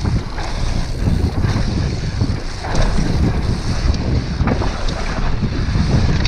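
Wind rushing over an action camera's microphone as a mountain bike descends a dirt trail at speed, with tyre noise on the dirt and frequent short rattles and knocks from the bike over bumps.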